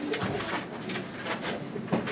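Room bustle in a large meeting room during a recess: scattered knocks and clicks of people moving about at the dais, over a low background murmur.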